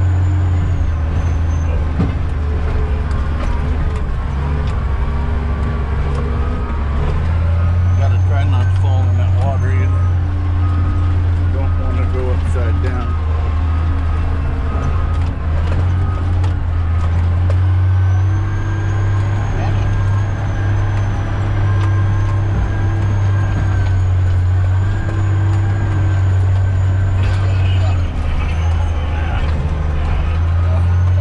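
Caterpillar D10T dozer's C27 V12 diesel engine running steadily under work, heard from inside the cab: a deep constant drone that swells a little at times, with a faint high whine that comes and goes.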